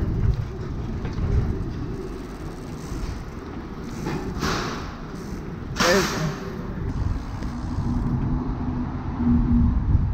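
Steady low rumble of riding a bicycle with a body-mounted action camera across a tiled station floor. Two short loud hisses come about four and six seconds in, and a faint steady hum rises near the end.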